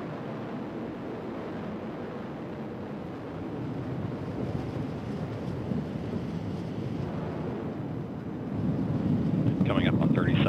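Atlas V 531 rocket climbing after liftoff, its RD-180 main engine and three solid rocket boosters heard from afar as a steady low rumble that grows louder near the end.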